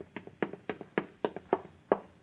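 Radio-drama sound effect of footsteps going quickly up a wooden staircase, about three to four steps a second.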